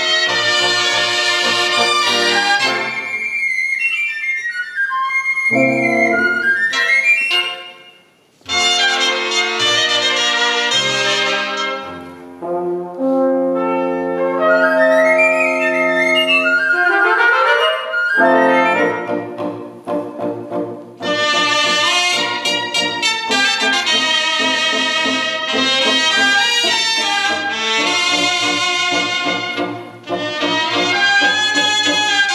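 A cobla, the Catalan sardana band, playing a sardana: trumpets and other brass with the double-reed tenores and tibles over a double bass, in phrases with a brief break about eight seconds in.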